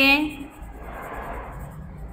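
Coloured pencil scratching steadily on workbook paper as a picture is shaded in, starting about half a second in after a last word of speech.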